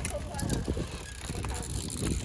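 Cyclocross bikes rattling and clicking as riders pass close by, with spectators' voices calling out over them.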